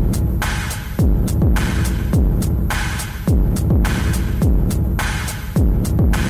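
Experimental techno: a deep kick drum with a falling pitch hits about once a second. Each hit is followed by a fading wash of noise, with short high clicks in between.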